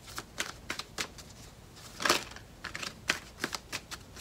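A deck of tarot cards being shuffled by hand: a run of quick, irregular card snaps and slaps, with one louder, longer burst about two seconds in.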